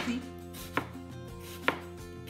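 Kitchen knife slicing through a white onion into julienne strips, the blade knocking on the cutting board with each cut: separate sharp chops a little under a second apart.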